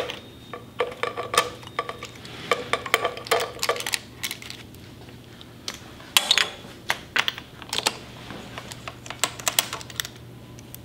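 Bursts of rapid clicking from a ratchet wrench, mixed with light metallic clinks of tools, as the spark plugs are worked loose and removed from a V-twin engine.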